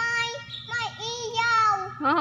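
A little girl singing in a high voice, with long held notes that slide up and down.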